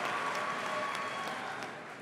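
Audience applause dying away, fading steadily.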